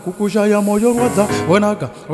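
Instrumental keyboard music playing, with the loud hiss of a stage fog machine spraying over it that stops about 1.4 s in.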